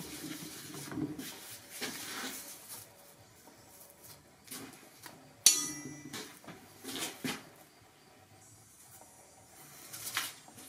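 Hands rubbing over a steel plate and handling a paper template on it: soft rubbing and shuffling, then one sharp metallic clink with a brief ring about five and a half seconds in, followed by a couple of lighter knocks.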